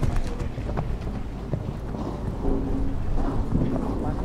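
Wind buffeting the microphone in a steady low rumble, with a few scattered soft thuds from a horse's hooves cantering on arena sand.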